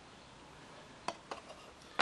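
Quiet room tone with a few light clicks a little after the middle and one sharper click at the end, from the small endoscope mirror cap being handled between fingers.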